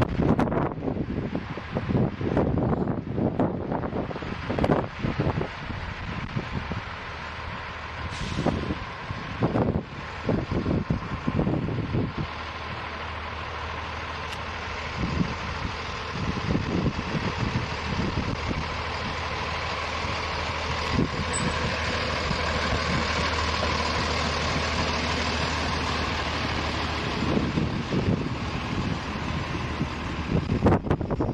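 Sperry rail-inspection hi-rail truck running along the track on its rail guide wheels, its engine hum and rolling noise growing steadily louder as it comes close and passes. Gusting wind buffets the microphone through the first part.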